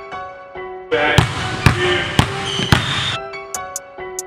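A basketball is dribbled on a hardwood gym floor, about two bounces a second in the middle stretch, over background music.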